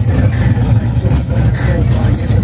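Engine of a 1967–72 Chevrolet C10 pickup rumbling at low speed as it rolls past, with voices in the background.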